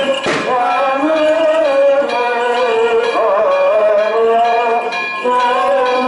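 A man chanting an ornamented Byzantine-style melody into a microphone, amplified over loudspeakers in one continuous line.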